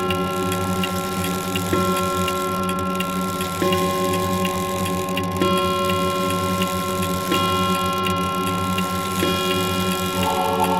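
Electronic music: sustained synth chords that change about every two seconds over a steady low drone, with regular clock-like ticks running through it.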